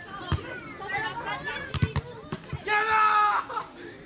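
Volleyball being hit several times in a rally, short sharp thuds, among players calling out, with one long, loud shout about three seconds in.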